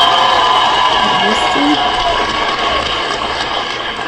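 Studio audience noise: many voices shouting and chattering at once, slowly dying down toward the end, with a few short words from single speakers over it.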